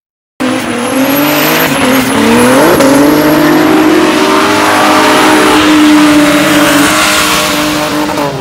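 Drift car's engine held at high revs while its rear tyres spin and squeal through a slide, cutting in suddenly about half a second in. The engine note peaks briefly about three seconds in, then holds steady and loud.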